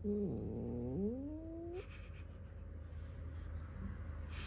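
A cat's threat yowl: one drawn-out low moan, about two seconds long, that dips in pitch and then rises, over a steady low hum.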